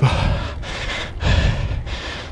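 Cyclist breathing hard at high effort: two heavy breaths about a second apart, with a steady rushing noise between them.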